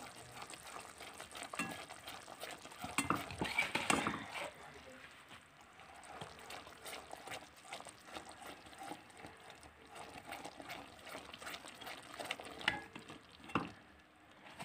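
Silicone spatula stirring ground dry coconut into hot sugar syrup in a kadhai: soft scraping stirring strokes, loudest about three to four seconds in, then fainter, with a couple of short clicks near the end.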